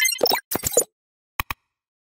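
Animated sound effects: a quick run of short pops in the first second, then two sharp mouse-click sounds close together about a second and a half in, as a subscribe button is pressed.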